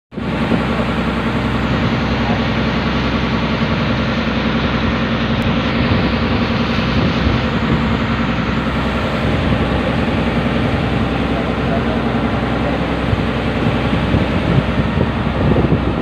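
Motorized outrigger boat's engine running steadily under way, a loud, even drone.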